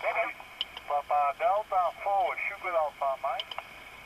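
A distant amateur station's voice received on 10-metre single-sideband through the Elecraft KX3 transceiver's speaker: thin, narrow-band speech in short phrases, the station PD4SAM calling in.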